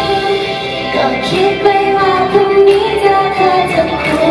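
Female idol-pop singing into a handheld microphone over upbeat backing music, the melody held and bending between notes.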